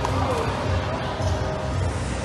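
Crowd chatter filling a large hall, over a steady low thudding beat about twice a second.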